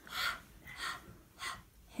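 A woman voicing the letter sound /h/ three times, short breathy puffs of air with no voice, about half a second apart, demonstrating the first sound of "Henry".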